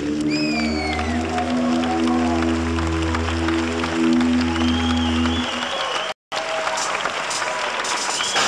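A live rock band's final held keyboard chord over a low bass note, with audience applause and whistles. The music stops about five and a half seconds in, a short dropout follows, then the applause goes on alone.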